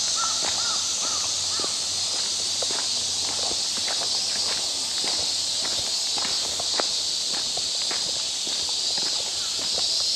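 Footsteps on a dirt-and-gravel path, at walking pace, over a steady high-pitched insect drone. A few short bird chirps come in the first two seconds.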